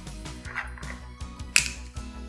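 Plastic screw cap being twisted off a bottle of vegetable oil, with one sharp click about one and a half seconds in, over soft background music.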